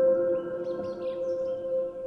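Slow solo piano music: a chord struck just before holds and slowly fades, with no new notes. Birdsong chirps faintly over it.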